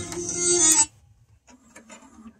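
Music playing from a Sony CDP-C505 CD changer cuts off suddenly under a second in, as the player leaves the current disc. Then a few faint mechanical clicks follow as the changer moves to another disc.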